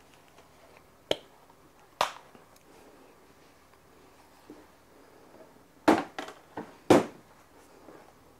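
Sharp knocks and clicks of objects being handled on a kitchen counter: two single knocks about a second apart early on, then a quick cluster of four around six to seven seconds in, the first and last of these the loudest.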